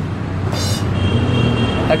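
Street traffic: a steady low rumble of vehicle engines on a busy city road, with a brief high hiss about half a second in.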